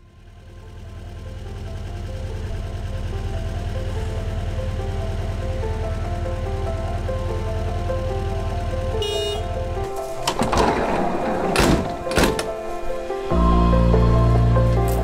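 Instrumental music fading in, with held bass and a repeating melody. About ten seconds in, a camper van's sliding door is opened with several clunks and a rush of noise lasting a few seconds. After that the music comes back louder, with heavier bass.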